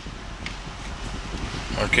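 Steady airy hiss of the car's air-conditioning fan running on a low setting inside the cabin, with a low steady hum beneath it from the BMW X6 M's idling 4.4-litre V8. A brief spoken word comes at the very end.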